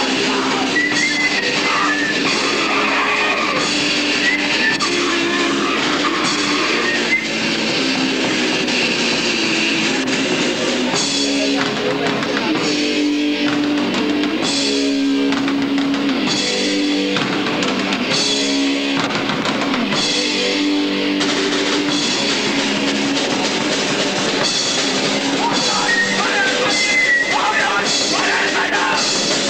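Heavy rock band playing live, with electric guitars and a drum kit. Midway through, the band plays a stop-start passage, breaking off briefly about once a second.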